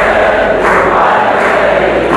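Many voices chanting a religious song together in unison, a crowd joining in behind a sheikh singing into a microphone.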